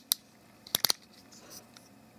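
Geared plastic ratchet joint in the leg of a 2015 Transformers Robots in Disguise Warrior Class Grimlock toy clicking as the leg is bent: one click just after the start, then three quick clicks a little under a second in. The joint is built with small internal gears, so it ratchets in clicks as it moves.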